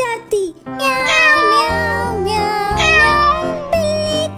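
Children's rhyme music with cat meows over the tune.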